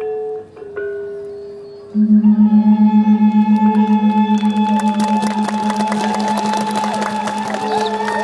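Balinese gong kebyar gamelan playing a slow lelambatan piece. It opens with a few single ringing metallophone notes. About two seconds in, a large gong is struck and rings with a pulsing beat, while bamboo suling flutes enter on a held tone. From about four seconds in, the full ensemble joins with dense metallic strokes and ornamented flute lines.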